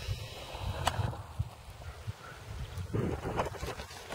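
Wind buffeting the camera's microphone, a low rumble that swells and fades, with one sharp tick about a second in.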